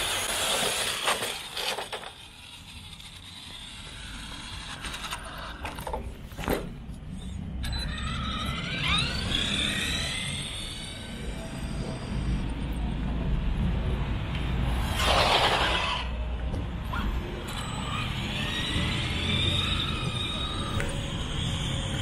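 Two electric RC trucks launching in a drag race: a burst of motor and tyre noise at the start, then rising motor whines as they speed up, over a low rumble.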